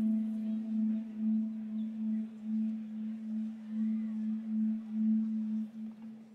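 A single low held note, close to a pure tone, swelling and fading in a slow steady wobble. Its brighter overtones die away within the first second, leaving the plain tone.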